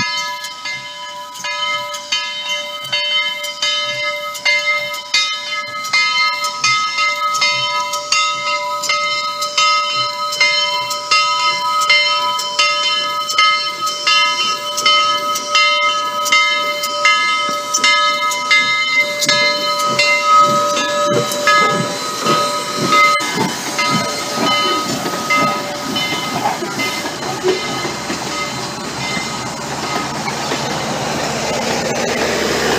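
A locomotive bell ringing with evenly spaced strokes, more than one a second, fading out about 23 seconds in. As it fades, Southern Railway 4501, a 2-8-2 Mikado steam locomotive, rolls past close by with hiss and a heavy rumble of wheels and running gear.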